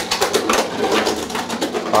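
Three Beyblade X spinning tops whirring in a clear plastic Wide Xtreme Stadium, with many rapid clicks and clacks as they strike each other and the stadium walls.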